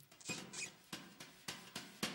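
Faint marker pen squeaking and tapping on a whiteboard in a few short strokes.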